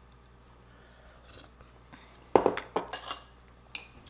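A metal spoon and a glass bowl knocking and clinking: one loud knock a little past halfway, then a few sharp, ringing clinks.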